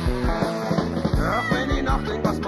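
Rock band playing an instrumental passage, with drums and bass keeping a steady beat under pitched lead instruments and no singing.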